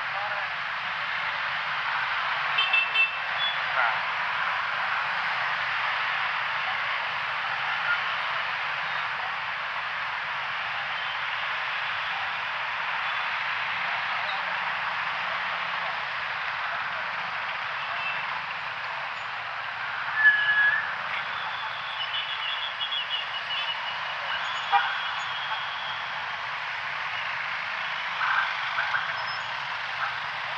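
Steady noise of dense rush-hour city traffic, mostly motorcycles with cars and buses, with a brief loud tone about two-thirds of the way through.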